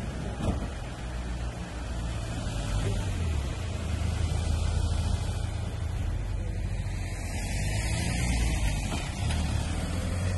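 Engine of a police van running close by, a low steady rumble that gets louder about three seconds in.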